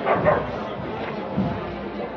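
Crowd of people talking, with one short loud call in the first half second.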